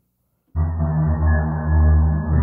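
Logic Pro X Alchemy synthesizer playing two layered voices together: an ambient drone with a detuned, low-pass-filtered saw drone bass under it, set in heavy reverb. It comes in suddenly about half a second in and holds as a deep, dark sound with its high end cut off.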